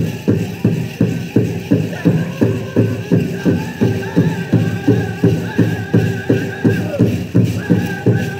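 Powwow drum struck in a steady, even beat of about three strokes a second, with a group of singers singing high-pitched over it for a jingle dress dance.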